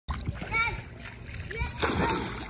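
A small child jumping into a swimming pool: a sudden splash near the end as he hits the water.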